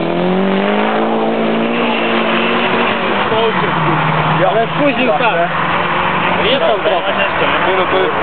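Engines of Volkswagen Golf Mk1 drag cars accelerating hard away from the start line. The engine note climbs steadily, drops at a gear change about three seconds in, then holds a steady pitch as the cars pull away down the strip.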